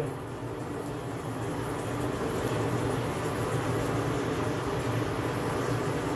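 Forge blower forcing air into a small coal fire: a steady rushing noise with a low hum, even throughout, as the fire runs hot enough to bring a thin steel bar to yellow heat.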